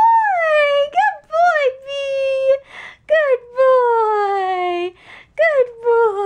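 A small dog whining: a run of high-pitched whines, the longest drawn out for over a second and falling in pitch, with short breathy sniffs between.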